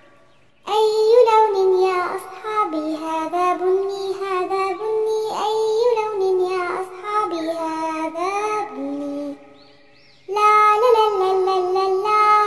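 A child's voice singing a song. The singing begins under a second in and drops out briefly at about nine seconds before starting again.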